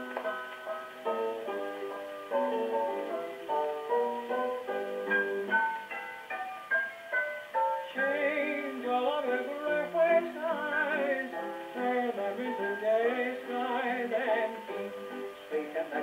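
A late-1920s 78 rpm dance record playing on a wind-up phonograph, in an instrumental passage between sung choruses. The sound is thin and boxy, with no bass and no treble. Steady held notes give way about halfway through to a wavering, vibrato-laden melody line.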